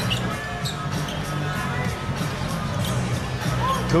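Basketball in play on a hardwood arena court: the ball bouncing, over crowd noise and steady arena music.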